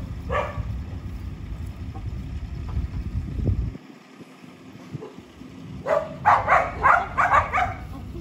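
A dog barking: a single bark near the start, then a quick run of about six barks about six seconds in.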